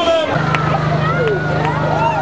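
A vehicle engine running steadily, coming in about a third of a second in, under crowd voices and shouts.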